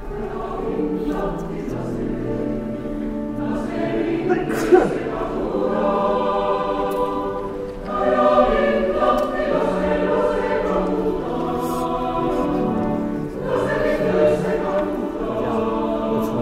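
Mixed choir singing sustained chords in several voice parts, in phrases with short breaks about eight and thirteen seconds in.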